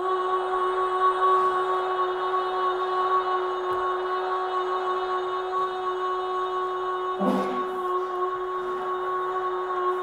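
Audio example of a held sung note distorted by amplitude modulation, with multiple added subharmonics and noise simulating chaotic vocal behaviour, played through loudspeakers. It cuts in abruptly and stays on one steady pitch, with a brief disturbance about seven seconds in. The added noise lacks the effort of real vocal distortion, a mismatch with the plainly sung voice underneath.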